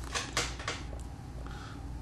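Several light clicks and ticks from handling the fly-tying vise and tools, spaced irregularly over the two seconds, over a steady low hum.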